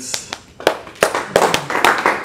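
Applause from a small audience: scattered hand claps that thicken into denser clapping about a second in.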